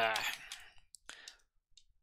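A man's drawn-out "uh", followed by a few faint, short clicks about a second in, then quiet.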